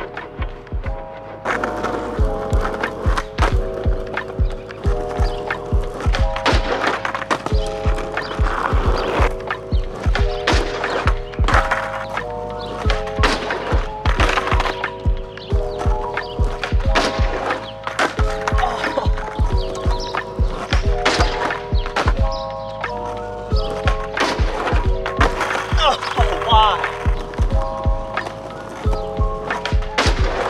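Background music with a steady drum beat and repeating sustained chords.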